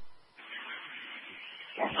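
Two-way fire radio channel keyed open: a steady hiss of transmission static starts about half a second in, and a man's voice comes in over it near the end.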